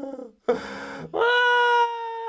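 A person acting out weeping: a short whimpering sob about half a second in, then a long, steady, high wail.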